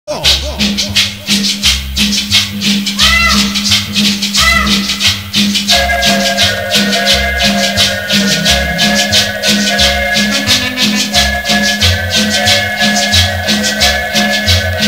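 Cumbia music with a steady shaker rhythm over a pulsing bass line; sustained keyboard-like chord tones come in about six seconds in.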